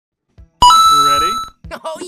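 A bright bell-like ding, struck once about half a second in and ringing out over about a second, with a voice underneath it.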